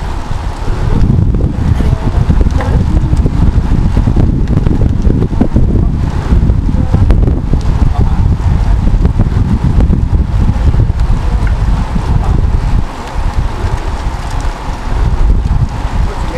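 Wind buffeting the microphone of a camera riding along with a pack of road cyclists: a loud, gusty low rumble that swells about a second in and eases briefly near the end.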